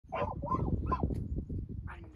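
Dog giving three short, high barks in quick succession within the first second.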